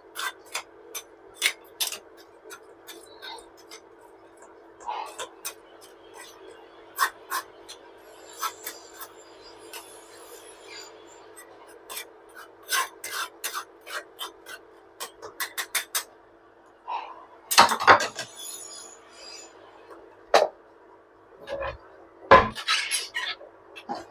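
Metal ladle working fermented rice through a stainless mesh strainer in a pot of soup broth: irregular light clinks and scrapes of metal on mesh and pot rim, with a few louder clatters later on, over a steady hum.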